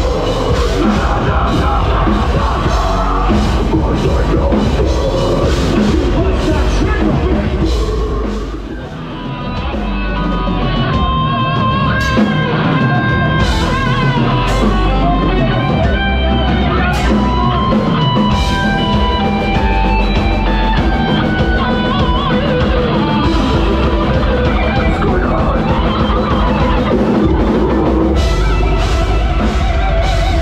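A heavy metal band playing live and loud through a club PA, heard from the crowd: pounding drum kit, distorted guitars and bass. The music drops back briefly about nine seconds in, then returns with a held melodic lead line over the band.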